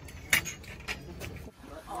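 Tableware clinking at a shared meal: a few short sharp clicks, the loudest about a third of a second in, over low background noise. A voice starts near the end.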